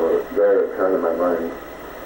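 A man speaking haltingly on an old audio tape recording; the voice sounds thin and muffled over a faint hum and hiss.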